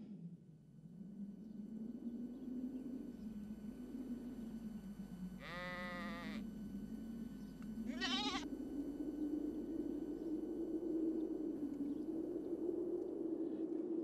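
A ram bleating twice, a longer quavering bleat about five seconds in and a shorter one a couple of seconds later, over a low steady hum.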